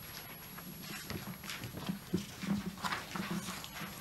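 Quiet meeting-room sound between votes: faint distant voices and a few small scattered knocks and clicks, like handling on a tabletop.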